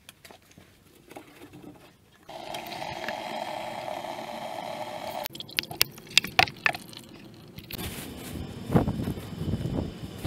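Water from the sprinkler line's opened bleeder screw running into a plastic bucket in a steady stream for about three seconds, then stopping suddenly. A few sharp clicks and knocks of handling follow, and near the end comes outdoor rustling with low thumps.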